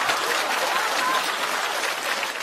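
Studio audience applauding and laughing at a punchline: a steady wash of clapping with laughter in it.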